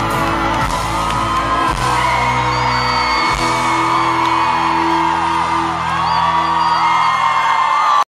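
A live pop band plays long held chords while a large crowd of fans screams and whoops over the music.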